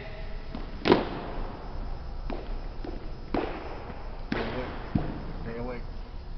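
Sharp knocks echoing through a large gymnasium: one loud crack about a second in, then lighter ones roughly once a second. A brief shouted drill command comes near the end.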